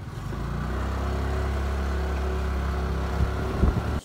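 A motorcycle engine running steadily close by, its low hum building up over the first half second and then holding an even pitch. Two sharp knocks near the end.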